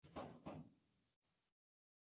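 Near silence, broken by one faint, brief noise in the first second, then dead silence.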